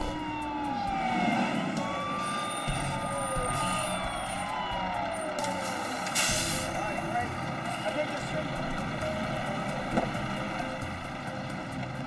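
Fire engine sirens wailing, their pitch sliding slowly down and up over a truck engine running, with a short hiss about six seconds in.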